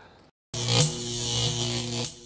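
Electronic logo sting: a sudden whoosh with a brighter hit, over a sustained low synth chord. It starts about half a second in, after a brief moment of dead silence.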